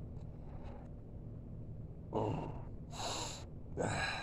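A man breathing between sentences: a short voiced exhale about two seconds in, then a sharp, noisy breath in about three seconds in, and a brief voiced sound near the end, over a low steady background hum.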